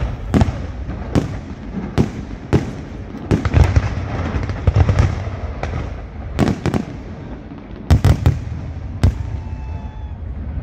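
Aerial fireworks shells bursting in an irregular series of sharp bangs over a steady low rumble. The bangs come thickest about midway through, and a close pair sounds near the end.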